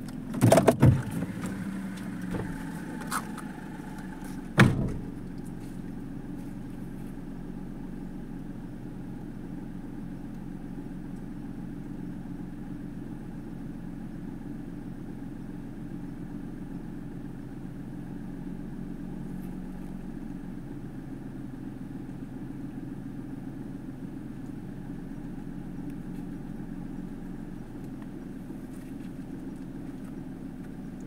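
Steady low hum of a car idling, heard inside the cabin. A few sharp knocks come in the first five seconds, the loudest about a second in and another near the fifth second.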